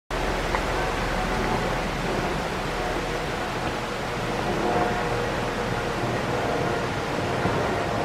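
Steady rushing noise, even in level throughout, with a low rumble beneath it.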